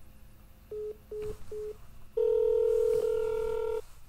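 Telephone signal tones over a phone line: three short beeps in quick succession, then one longer, louder tone lasting about a second and a half.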